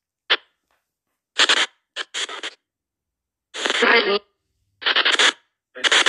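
SP Spirit Box 7 phone app sweeping through stations: about seven short, choppy snatches of voice-like sound, each a fraction of a second long. Between them the app's noise gate cuts the sound to dead silence.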